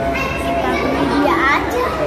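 Several children's voices talking and calling out over one another in a large room.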